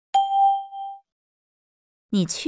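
A single bell-like ding, struck once and ringing out for under a second: a chime cue marking a new item in a recorded listening exercise.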